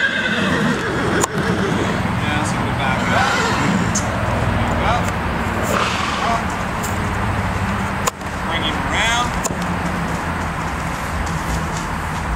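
A horse whinnying several times, short wavering calls with the longest about nine seconds in, over a steady low drone.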